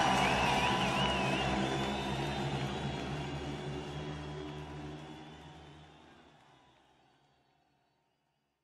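Speedway motorcycle engine noise mixed with background music, fading steadily and dying out to silence about seven seconds in.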